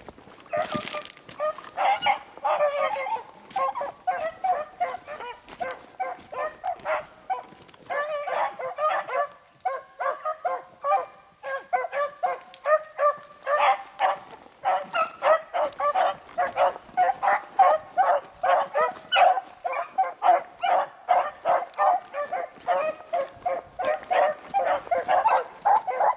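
Pack of beagles baying as they run a rabbit's track, a rapid stream of short, overlapping barks from several hounds. The barking thins briefly about ten seconds in, then picks up and runs thicker to the end.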